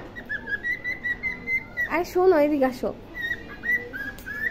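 Cockatiel whistling a string of short, wavering notes at one high pitch, broken about halfway through by a brief spoken word, then whistling again near the end.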